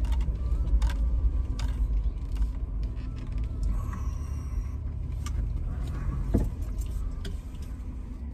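Low, steady rumble of a car's engine and road noise heard inside the cabin as it drives slowly, with a few small clicks and taps, the sharpest about six seconds in.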